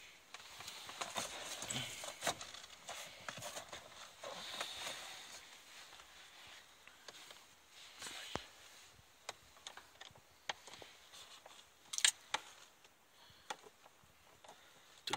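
Hands handling the plastic cabin filter housing and wiring behind the glove box: faint rustling, then scattered light clicks and taps, the sharpest about twelve seconds in.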